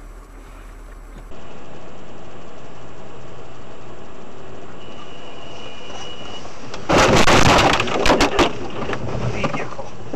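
Steady road noise heard through a dashcam, then, about seven seconds in, a car collision: a loud burst of crashing impacts lasting over a second, followed by a few smaller knocks.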